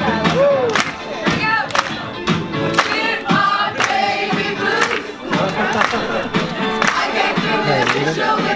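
A crowd singing together with steady hand-clapping in time, about two claps a second.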